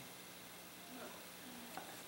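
Faint room tone in a hall: a steady low hiss with a faint hum and no clear event.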